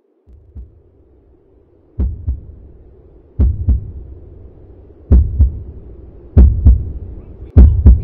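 Heartbeat sound effect: paired low thumps, lub-dub, starting about two seconds in and repeating roughly every second and a half, each beat louder than the last, over a faint steady hum.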